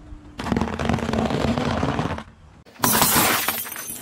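Car tyre rolling over hard, crunchy biscuits: a dense crackling crunch lasting about two seconds. A little later a glass container bursts under the tyre with a sudden loud shatter and tinkle of breaking glass that fades over a second or so.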